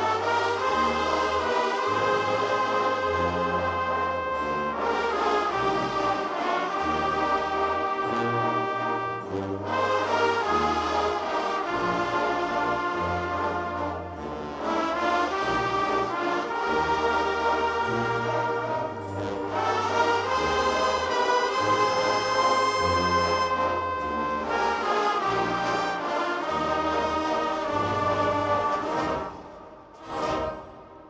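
A massed wind band of saxophones and brass, with tubas on the bass line, playing sustained, swelling phrases. The level drops sharply near the end.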